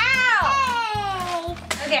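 A child's long, high-pitched wordless cry that falls in pitch for about a second and a half, over background music with a steady beat.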